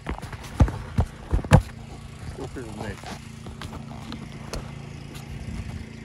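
Several sharp knocks of wooden beehive boxes and covers being handled, bunched in the first second and a half with the loudest about a second and a half in, over the steady low hum of a small engine running.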